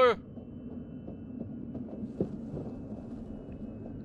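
A film soundtrack playing under the reaction: a steady low rumble with a faint thin high tone above it and a soft knock about two seconds in.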